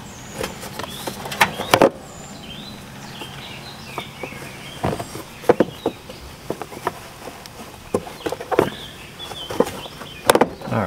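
Plastic battery box cover being set over a car battery and pressed into place: scattered light plastic clicks and knocks.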